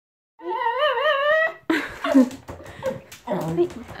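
Toy poodle whining once, a wavering high-pitched whine about a second long, excited as its breakfast is brought; then scattered clicks and rattles.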